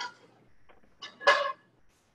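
Metal frying pans clanking onto the grates of a gas range. A clank about a second in rings briefly, after the ringing tail of the one before.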